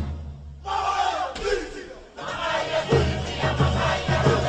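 Cook Islands drum-dance performance: the drumming stops and performers give group shouts, then the drums come back in about three seconds in with a steady beat.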